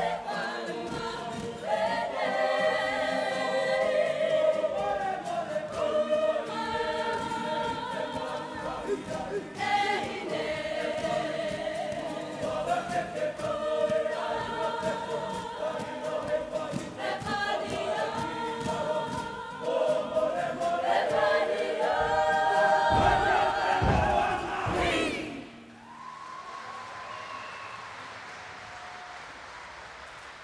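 Kapa haka group of men and women singing together in unison to acoustic guitar accompaniment. Two heavy low thumps sound near the end of the song, which then stops abruptly about five seconds before the end, leaving a much quieter hall murmur.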